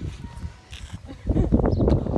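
Wind buffeting a phone microphone: a loud gusting rumble that picks up a little after a second in.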